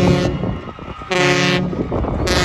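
A loud horn of several tones sounding together, in blasts: a long blast that cuts off just after the start, then a short blast of about half a second about a second in.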